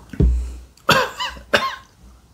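A man coughs twice, harsh and voiced, about a second in and again half a second later, after a low thump at the start: coughing on a sip of neat whisky.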